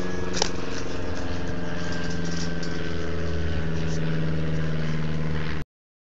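A steady mechanical hum: a low droning tone that holds its pitch, with a sharp click about half a second in. It cuts off suddenly shortly before the end.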